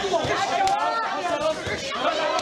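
Ringside chatter: several voices talking and calling out over one another, with a couple of short sharp knocks about a second apart.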